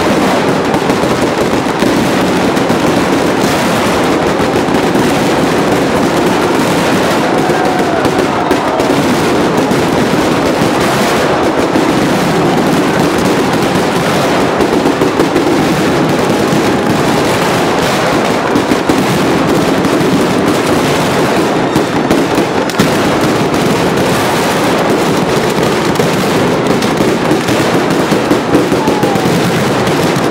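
Strings of firecrackers hung on wires over a crowd going off in a dense, unbroken rapid-fire crackle of bangs, loud throughout with no let-up.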